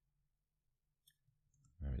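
A few faint, quick computer mouse clicks a second or so in, after a near-silent start.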